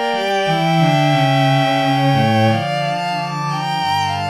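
String quartet playing held, overlapping notes that change every half second or so, with the lower parts moving beneath the upper ones.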